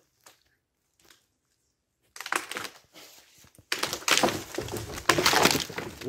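A tree branch, pulled down with a grappling-hook rope, breaking and crashing down through the twigs and into dry leaf litter. The cracking starts about two seconds in and is loudest over the last two seconds.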